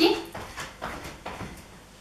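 Light thuds of sneakers landing on an exercise mat over a wooden floor during jumping jacks, several soft impacts a second that grow fainter and die away.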